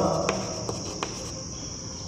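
Chalk tapping and scraping faintly on a blackboard as a word is written, a few light ticks about half a second apart, over a steady high-pitched chirring in the background.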